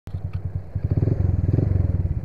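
Honda scooter's small single-cylinder engine running in rapid low pulses, growing louder about a second in as it pulls away.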